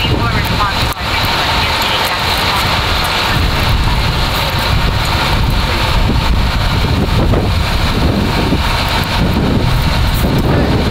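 Strong wind buffeting the microphone in a steady low rumble, with indistinct voices underneath.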